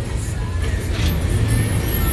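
Low, steady rumble of bus engines running at a bus terminal.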